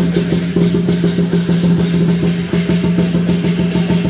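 Lion dance percussion: Chinese drum with clashing cymbals beating a fast, steady rhythm of about five strokes a second.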